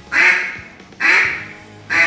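Zink ATM double-reed duck call blown in basic quacks, about one a second: three quacks, each starting sharply and trailing off, the last one just at the end.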